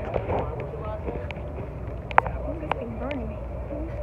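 Indistinct voices of people talking over the steady low hum of an idling boat engine, with a few sharp clicks or knocks about halfway through.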